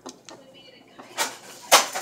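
Two short, loud rustling knocks about half a second apart, from hands handling a plastic penguin toy and gummy candy close to the microphone.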